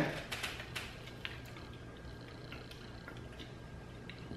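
Faint crunching and chewing of a bitten Crunchwrap Supreme with its crisp tostada shell: several crunchy clicks in the first second and a half, then a few sparser ones over a low steady hum.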